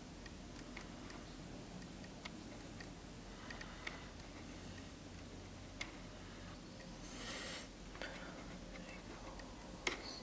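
Faint, irregular small clicks over quiet room noise, with a short hiss about seven seconds in and a sharper click near the end.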